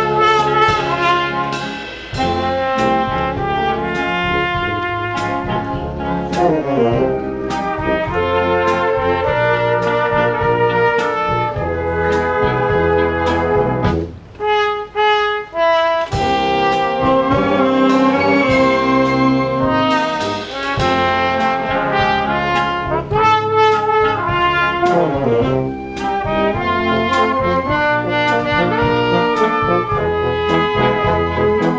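Concert wind band playing: brass leading over flutes, clarinets and saxophones, with a steady percussion beat. About halfway through, the full band drops out briefly, leaving a few held notes before the ensemble comes back in.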